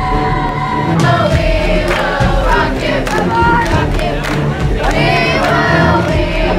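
A large group of school students singing and chanting together in unison.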